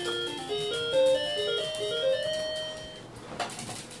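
Electronic melody from a toddler's pink ride-on toy's sound panel: a simple tune of single beeping notes that ends a little under three seconds in, followed by a few soft clicks.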